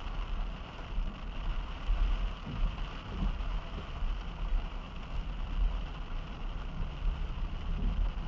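Inside a slow-moving car in heavy rain: steady low road and engine rumble with the hiss of rain on the car body and windshield.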